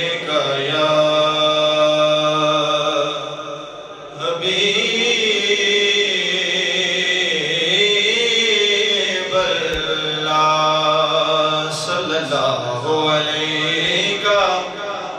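A man reciting a naat unaccompanied into a microphone, holding long sung notes with wavering ornaments. There is a brief breath break about four seconds in.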